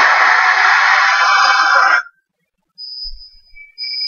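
A man's voice making a loud, harsh, breathy imitation of a dinosaur roar, held for about two seconds and cut off suddenly. A faint high steady tone follows near the end.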